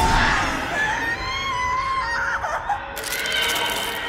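Horror film trailer soundtrack: music and a wavering, voice-like cry. A harsh noise joins in about three seconds in.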